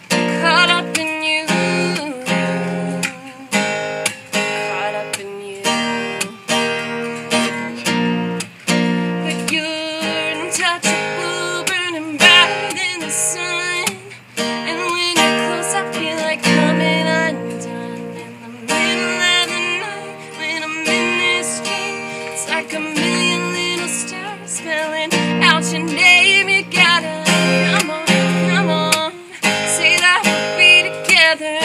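Solo acoustic guitar strummed in a steady rhythm while a woman sings a slow pop-country ballad over it.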